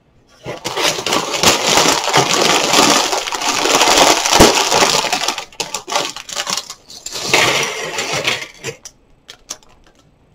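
Thin plastic LEGO parts bag crinkling and rustling as it is handled and torn open, in two long bouts. Near the end, loose LEGO pieces tumble out onto the table in a run of small sharp clicks.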